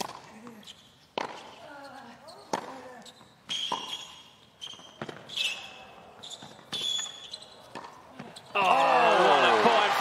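Tennis ball struck back and forth in a hard-court rally, about one hit every second, with a player grunting on some of the shots. Near the end the crowd breaks into loud cheering and shouting as the point is won with a backhand smash.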